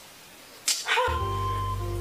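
A woman moaning in pain from labour, a short drawn-out "ah" about two-thirds of a second in. About a second in, background music with steady low held notes comes in under it.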